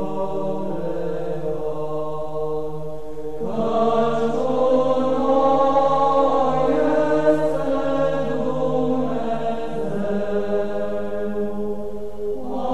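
Slow choral chant in the background: voices holding long notes, with a new phrase entering about three and a half seconds in.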